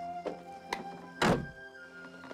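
Soft film-score music with held tones. About a second in comes a single heavy thunk, an old truck's door being shut, with a few lighter knocks around it.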